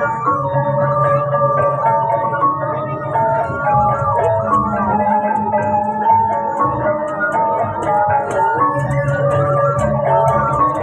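Balinese gamelan ensemble playing dance accompaniment: bronze metallophones ring a quick, busy melody over a sustained low tone, with crisp high ticks that grow denser through the second half.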